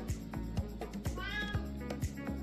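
Background music with a steady beat. A domestic cat meows once, briefly, a little past the middle.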